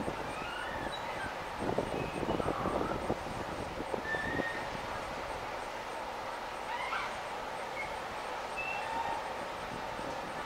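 Steady outdoor background noise with scattered short bird chirps, and a stretch of irregular clattering about two to four seconds in.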